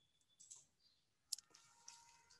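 Near silence over a video call: faint room tone with a couple of soft clicks, the sharpest a little past a second in.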